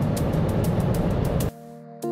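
Steady road and wind noise inside the cabin of a Mercedes EQC electric car cruising at 150 km/h, with a faint music beat underneath. About one and a half seconds in, the car noise cuts off and a quiet, held synthesizer chord takes over.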